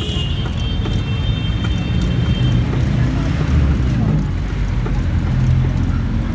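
Philippine jeepney's engine running with a loud, steady low rumble, heard from inside the open cabin as it rides. A thin high whine sounds over it through the first half.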